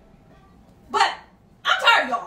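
A person's voice making two short vocal sounds, one about a second in and a longer one near the end, with quiet before them.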